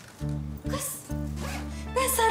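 A backpack zipper being pulled in a few short rasps, over low, sustained background music.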